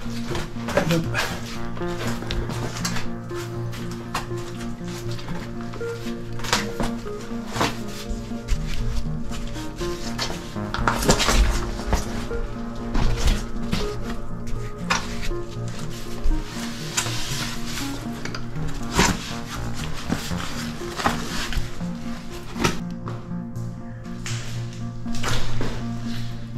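Ambient background music of steady, sustained droning tones, with scattered sharp knocks and scrapes of footsteps and gear on cave rock throughout.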